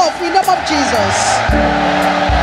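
A congregation calling out and cheering together in a dense roar of voices, over sustained keyboard chords that come in with a deep bass note about halfway through.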